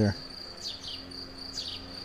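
A blackbird's short falling chirps, about two a second, over a steady high insect trill like a cricket's.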